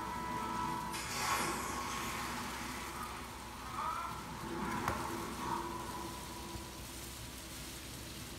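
Kitchen knife scraping and tapping on a plastic cutting board as julienned carrot sticks are swept off it, with a few light knocks. A television plays faintly in the background.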